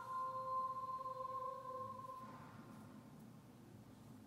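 Faint television sound: a single high note held steady for about two seconds, then fading into quiet room tone.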